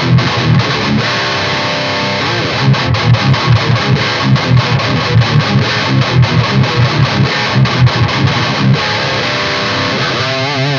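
Heavily distorted electric guitar in drop C tuning playing a tight metal riff through a Lichtlaerm King in Yellow overdrive in front of a Mezzabarba amp. The tone is very tight and compressed. A held chord opens the riff, fast chugging notes fill the middle, and it ends on another held chord.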